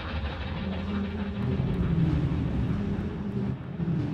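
Electronic dance music in a quieter, filtered passage of a DJ mix: a dense low drone with most of the high end cut away.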